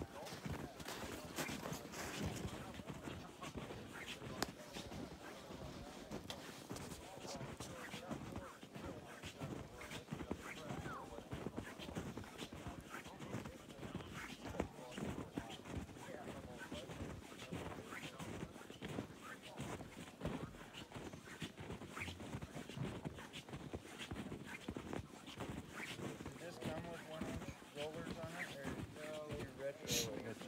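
Footsteps crunching irregularly on packed snow, over indistinct voices of people talking nearby.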